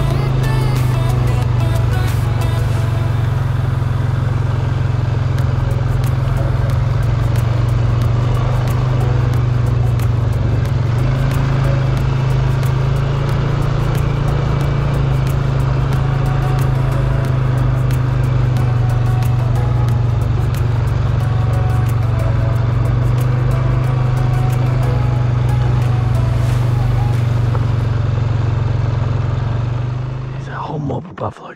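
Polaris ATV engine running at a steady speed as the quad is ridden along a rough bush track, a constant low drone with rattles and ticks over it.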